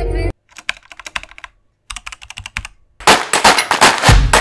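A song cuts off, then two short runs of quiet, rapid keyboard-typing clicks, then loud percussive intro music with sharp, evenly spaced hits starting about three seconds in.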